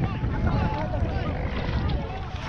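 Rough sea and wind buffeting the microphone on a Coast Guard rescue boat. Through it come the voices of people in the water, shouting and crying out.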